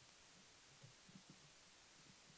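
Near silence: room tone, with a few faint low bumps about a second in.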